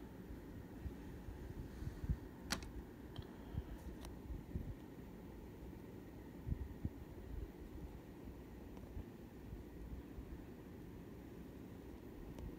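Faint handling sounds: a low rumble with a few soft bumps and two sharp light clicks about two and a half and four seconds in, as a 1/64 diecast model car is set down on a diorama road and the camera is handled.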